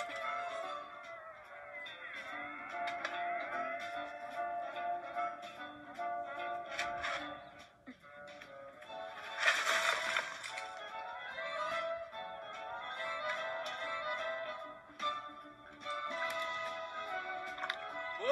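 Film score music from a TV speaker, melodic and unbroken, with a short rushing burst of noise about ten seconds in.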